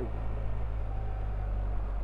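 BMW R1300GSA's boxer-twin engine running steadily at low road speed, heard from the saddle as a steady low drone.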